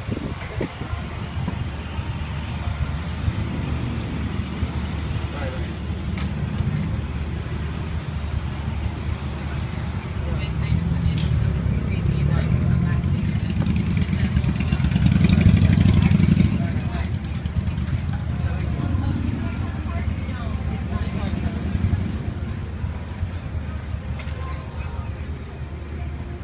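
Steady low rumble that grows louder about fifteen seconds in, under indistinct voices.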